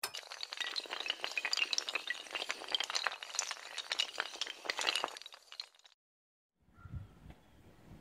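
Sound effect of many hard tiles clinking, clattering and shattering like breaking glass: a dense run of small sharp clicks that dies away after about six seconds.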